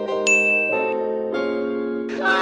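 Background music of sustained chords that change about every two-thirds of a second. A single bright bell-like ding about a quarter second in rings on for a moment.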